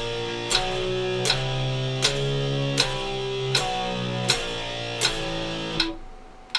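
Electric guitar playing a chord drill of three-note power chords that climb by semitones from A5 to C#5 and step back down, one chord per metronome click. The metronome clicks about every three quarters of a second (80 beats a minute), and the playing stops just before the end.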